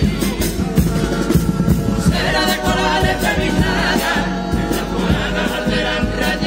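A carnival comparsa's all-male choir singing together in parts, backed by Spanish guitars and a bass drum (bombo) marking a steady beat.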